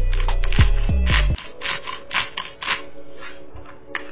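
Music with a heavy bass beat that cuts off about a second in, followed by a quick run of gritty grinding strokes, about three a second: a salt mill being twisted to add more salt to the avocado sauce.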